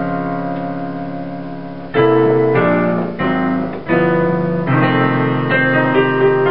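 Blues piano played on a Yamaha Clavinova digital piano. A held chord rings and fades for about two seconds, then a run of loud struck chords follows, the playing growing busier near the end.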